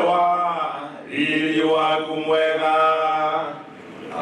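A man singing a slow, chant-like song in long-held notes, in two phrases, the second stopping shortly before the end.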